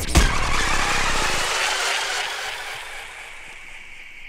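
Breakdown in a drum and bass track: the beat cuts out, leaving a noisy sustained sound with a thin steady high tone, fading away over about three seconds.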